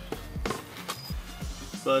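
A few light, irregular clicks and knocks from a flathead screwdriver working a plastic oil drain plug, over quiet background music.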